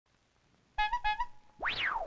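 Cartoon sound effects: two short bright notes, each bending up slightly at the end, then a swooping whistle-like glide that rises fast and falls slowly.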